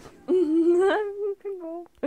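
A person laughing: a drawn-out laugh with a held pitch of about a second, then a shorter one.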